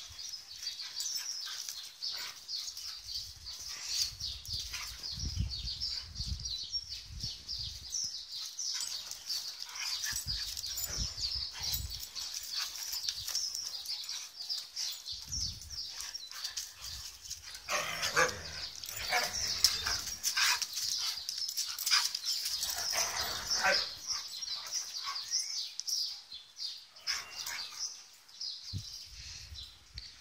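Huskies and a pointer-type dog vocalizing while they play-fight: low rumbling sounds, then louder outbursts in the second half. It is rough play noise that can pass for a fight but is not aggression.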